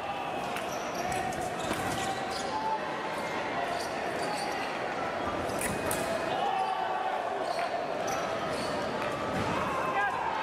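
Fencing shoes squeaking and stamping on the piste, with short sharp clicks of foil blades meeting, over voices carrying in a large hall.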